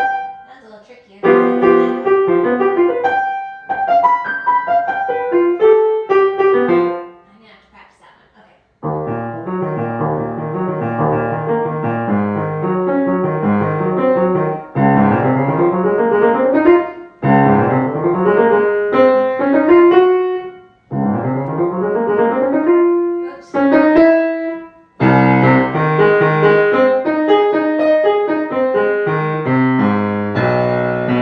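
Grand piano being practised: short phrases that break off and restart, with a rising run played over several times in the second half.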